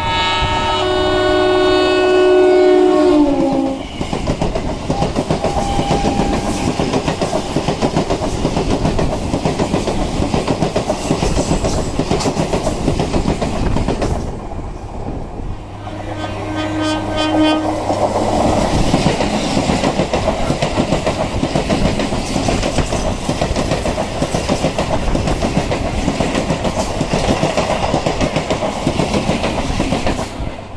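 Electric multiple-unit (EMU) suburban train horn sounding for about three seconds, its pitch sagging as it cuts off. The horn gives way to the running rumble and clickety-clack of the electric local train on the rails, with a second, shorter horn blast about sixteen seconds in.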